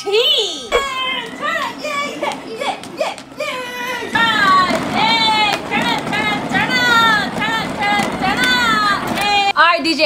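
Young children shouting and cheering excitedly, their high voices growing louder and more sustained from about four seconds in, over a low steady rumble.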